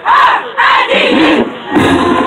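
Marching band members shouting a chant in unison, two loud shouts in a break in the playing, then the band comes back in near the end.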